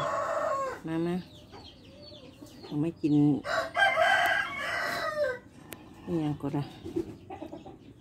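A rooster crowing once, one long call of about two seconds near the middle.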